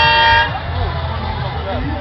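A loud, steady horn blast on one note that cuts off about half a second in, followed by crowd chatter over a low rumble.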